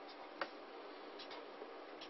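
Marker pen writing on paper: one sharp tap about half a second in, then a few faint short strokes, over a steady hiss.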